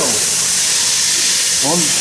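A steady, loud hiss with no rhythm or change, strongest in the high range. A man's voice is heard briefly at the start and again near the end.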